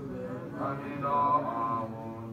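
Mantra chanting, sung in long held phrases, swelling louder about a second in.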